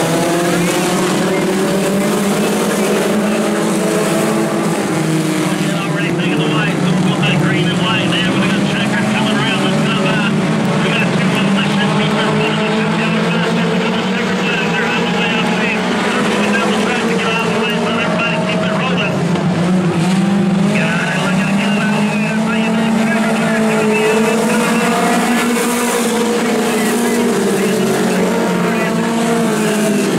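A pack of mini stock race cars' four-cylinder engines running hard on a dirt oval, the combined engine note rising and falling in pitch as the cars run down the straights and back off for the turns.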